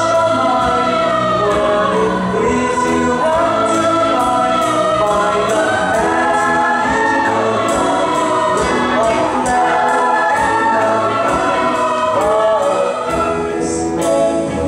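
Musical-theatre chorus singing with instrumental accompaniment, the voices holding long notes over a steady beat of cymbal-like ticks about twice a second.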